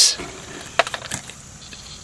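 A quiet pause with faint background noise and a few light clicks about a second in.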